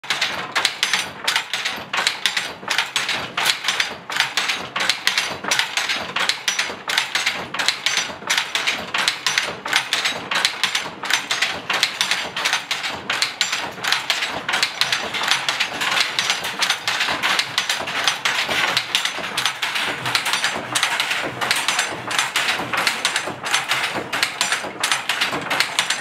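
Wooden handloom being worked: a steady, fast rhythm of wooden knocks and clacks, about two to three a second.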